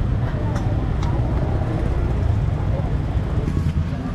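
Steady low rumble of busy street traffic, with faint voices of people nearby.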